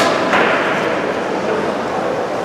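Ice rink hall murmur of crowd and players' voices, with a sharp knock at the start and a brief scrape-like rush of noise just after.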